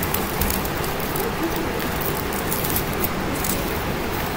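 Light rustling and crinkling of artificial flowers, leaves and paper shred being handled in an arrangement, over a steady background hiss.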